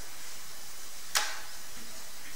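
Quiet room tone with a steady hiss, broken by a single sharp click a little over a second in.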